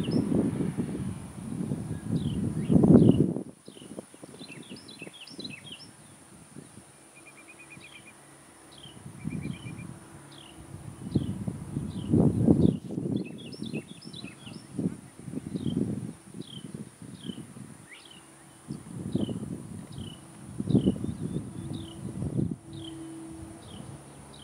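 Birds chirping with many short, downward-slurred calls and a few quick trills. Under them, irregular gusts of wind rumble on the microphone, loudest in the first three seconds and again twice later.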